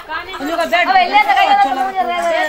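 Many women's voices at once, chattering and singing over each other. One voice holds a long sung note through the second half.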